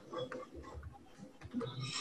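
Faint computer keyboard typing: a scatter of soft key clicks as a name is typed.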